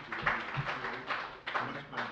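Indistinct, off-microphone talk in a room: low conversation that cannot be made out.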